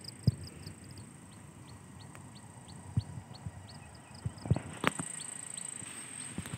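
Outdoor field ambience of insects: a steady high-pitched drone with a repeated short high chirp a few times a second that fades out about two-thirds of the way through. A few soft knocks come in the second half.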